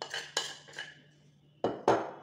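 A metal spoon scraping and clinking against a ceramic bowl three times as tangzhong paste is scraped out, then two sharp knocks close together near the end.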